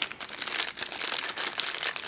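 Clear plastic bag crinkling as hands unwrap the device inside it: a continuous run of irregular crackles.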